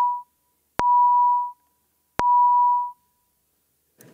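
Electronic signal tone beeping at one steady mid pitch, each beep starting with a sharp click and lasting under a second. The tail of one beep is followed by two more, with about half a second of silence between them, sounding the opening of an electronic roll-call vote.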